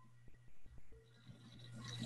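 Faint room tone with a steady low hum and a few soft clicks.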